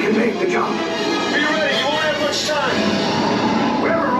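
Music playing with indistinct voices over it, from the ride's show soundtrack.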